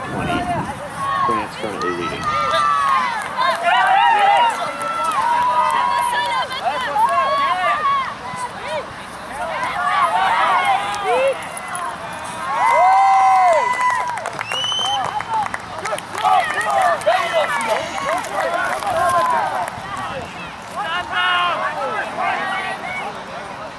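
Several raised voices shouting and calling out over one another during play, loudest about halfway through.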